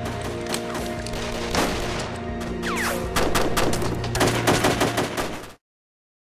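Film-soundtrack gunfight: gunshots in rapid bursts over a sustained music score, growing denser in the second half. Everything cuts off abruptly about five and a half seconds in.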